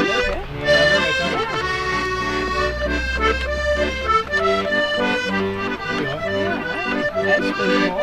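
A small wooden accordion playing a tune with chords over a bass. One long bass note is held for the first four seconds, then the bass comes and goes under the melody. It is in a tuning that, by its player's account, does not suit playing together with other musicians.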